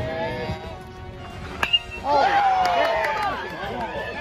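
A metal baseball bat hits the ball once about a second and a half in, a sharp crack with a brief ringing ping: solid contact. Spectators start yelling and cheering right after.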